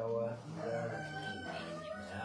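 A man chanting a Then ritual invocation in a low voice, drawn out on long held notes.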